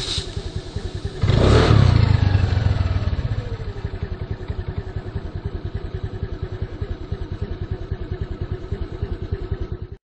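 Small engine idling with a steady rapid pulse. It is revved briefly about a second in, and the rev dies away over the next two seconds.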